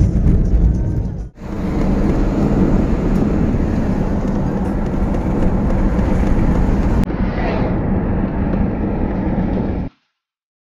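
Road and wind noise of a moving car heard from inside the cabin, loud and steady and heaviest in the low end. It breaks off abruptly about a second in and changes tone suddenly about seven seconds in, where clips are joined.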